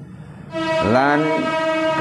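A man's voice holding one long drawn-out vowel about half a second in. It rises in pitch at first, then stays level, and runs straight on into speech.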